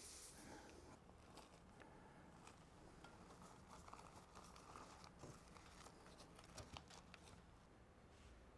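Near silence: room tone with faint, scattered small clicks and rustles of handling, a couple of them a little louder near the end.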